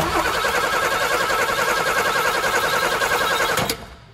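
A car engine running loudly and steadily, cutting off abruptly near the end.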